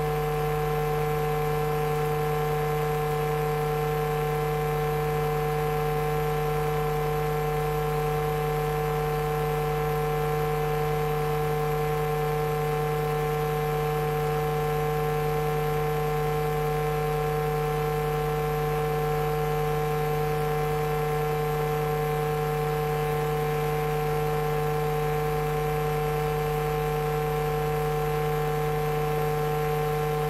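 Steady electrical hum made of several fixed tones, a low one strongest, holding unchanged at an even level with no breaks.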